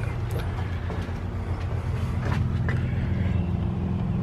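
A steady low mechanical hum, like a motor or engine running at a constant speed, with a few faint light knocks.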